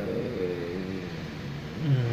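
A man's voice in a low, hesitant murmur, with his voice rising near the end as he starts to laugh.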